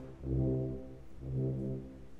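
Concert band's low brass playing soft sustained chords: two swells, each rising and fading away.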